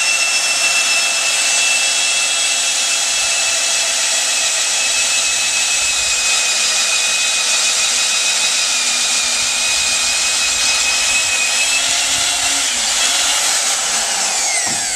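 Corded electric drill mounted on a timber-framing boring machine, running steadily at full speed as it bores into a timber beam: an unbroken high motor whine over the noise of the bit cutting.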